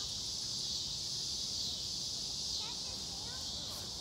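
Steady high-pitched chorus of crickets, with a faint distant voice calling a few times in the second half.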